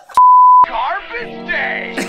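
A loud, steady, high-pitched bleep about half a second long, a censor bleep covering a word, followed by film soundtrack music with speech.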